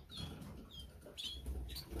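Caged canaries giving a few short, faint chirps.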